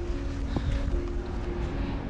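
Background music of soft, steady held notes over a constant low rumble.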